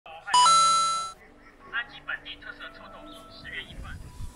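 A bright two-note chime, like a doorbell, rings loudly for under a second near the start. Quieter voices over background music with steady held tones follow.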